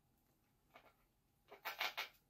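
Mostly near silence, then near the end a short rush of breath with no oboe tone sounding.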